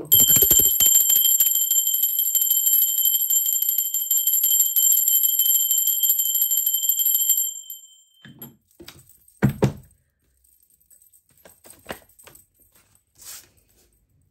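A small brass hand bell rung rapidly for about seven seconds, its clapper striking many times a second over a steady high ring, then stopping. A few soft taps and one knock follow.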